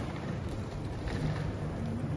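Steady hum and noise of a busy airport terminal hall, with faint voices in the distance.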